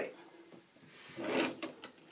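A drawer sliding open, a short rubbing slide about a second in followed by a couple of light clicks.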